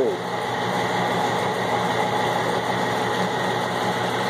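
A steady machine hum with a constant pitched drone, unchanging throughout, such as running equipment or a motor.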